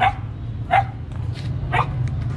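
A dog barking three times, short sharp barks spread over two seconds.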